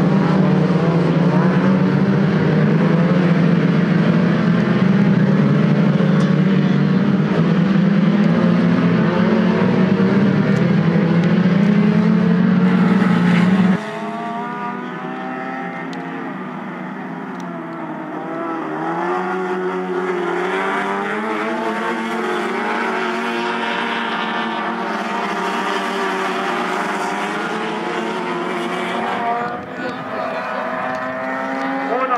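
Engines of a pack of small Fiat race cars running hard: a loud, steady, close drone for the first half. About halfway through it cuts abruptly to a quieter mix of several engines, rising and falling in pitch as they rev and change gear.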